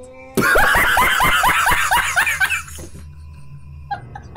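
A man laughing hard: a fast run of loud 'ha' pulses, about five a second, that begins a moment in and dies away a little before the end.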